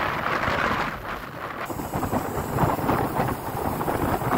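Wind buffeting the camera microphone of a bicycle coasting downhill: a rough, fluttering rumble with hiss, with a sudden change in the hiss about one and a half seconds in.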